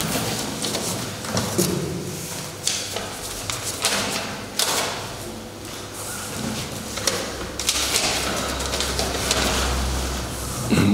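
Ballot slips and a cardboard box being handled: paper rustling, with irregular light knocks and scrapes as hands reach into the box and pull slips out.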